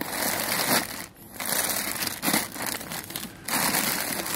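Plastic grocery packaging crinkling and rustling as packs are moved around in a shopping cart, with a short break a little over a second in.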